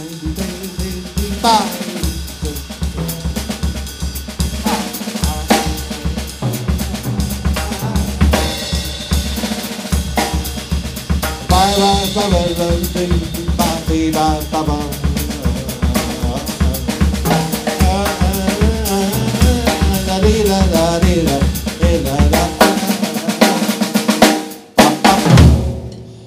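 Drum kit played in an improvised paso doble-style groove: snare and bass drum with cymbals, busy and continuous, ending with a few loud hits near the end.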